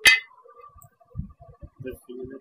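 A single sharp steel clang from a truck's front-axle steering knuckle and kingpin parts being struck, leaving a thin steady metallic ring, followed by a few soft low knocks as the parts are handled.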